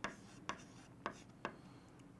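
Chalk writing on a chalkboard: faint scratching with three short taps as the strokes of the figures go down.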